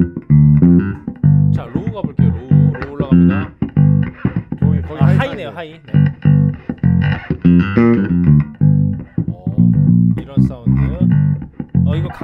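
Electric bass guitar played finger-style through a DSM & Humboldt Simplifier Bass Station preamp: a steady run of short, punchy notes with brief gaps between them, as the basic tone is tried out with the EQ set flat.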